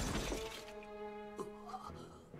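Anime soundtrack: a sudden crash right at the start, then music with held notes.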